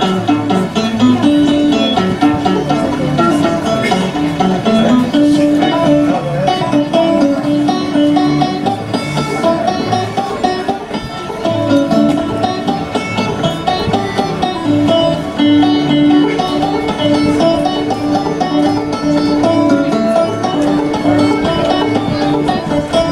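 A banjo played solo in traditional old-time style: a steady plucked tune in which one note comes back again and again, ringing against the melody.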